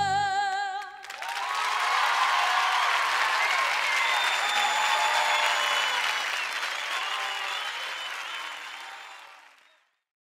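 A singer's final held note with vibrato over the band ends about a second in. A studio audience then applauds and cheers, and the applause fades out near the end.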